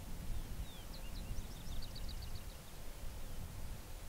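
A small bird singing one short phrase, about two seconds long: a few slurred high notes, then a quick run of sharp chips. A low rumble runs underneath.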